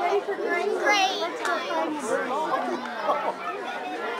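Several children and adults talking over one another, with a short, high, wavering squeal about a second in.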